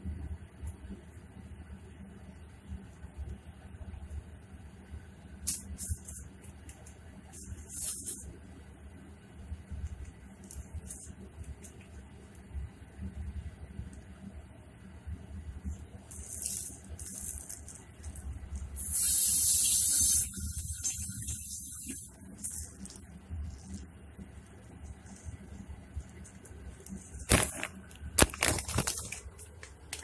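Kitchen food-preparation handling noises: scattered rustles and clicks of hands working with chili peppers and a plastic bag, over a low steady hum. There is a short louder burst of noise a little past the middle and a run of sharp clicks near the end.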